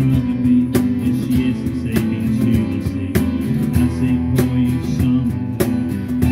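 Live band playing an instrumental passage: acoustic guitar strummed in a regular rhythm over electric bass, with steady held low notes underneath and no singing.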